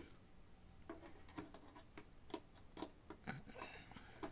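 Faint, irregular clicks and ticks of a small precision screwdriver turning screws into the bottom cover of a medical scale, snugging them down.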